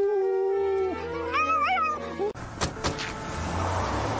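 A cartoon dog whining over background music: a held whine, then a short wavering, higher cry. About two seconds in, the sound cuts to a street scene, with two sharp knocks and a steady noise.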